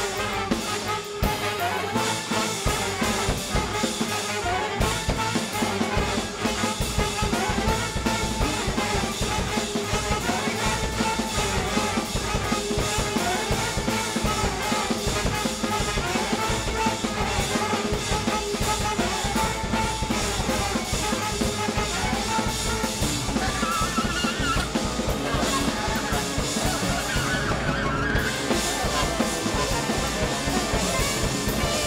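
Jazz big band playing live: brass and saxophones over a busy drum kit, dense and steady in loudness throughout.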